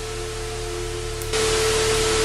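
Television static: a loud, even hiss of white noise that dips lower for a moment and swells back up about a second and a half in, over a steady humming tone.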